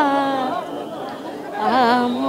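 A devotee singing a Jagannath bhajan unaccompanied. A held, wavering note fades out about half a second in. Crowd chatter fills a short pause, and a new sung phrase begins near the end.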